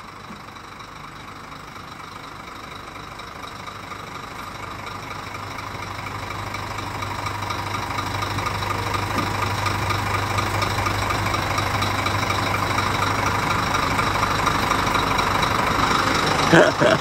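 Brand-new Scania K410iB bus's rear-mounted 13-litre inline-six diesel idling steadily, growing gradually louder.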